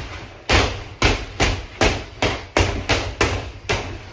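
Boxing gloves landing punches on a hanging heavy bag in a steady flurry, about two to three blows a second, each a sharp smack that fades quickly.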